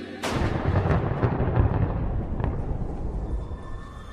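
A sudden loud boom sound effect: a sharp crack about a quarter-second in, then a rumbling tail with a few smaller crackles that dies away over about three and a half seconds.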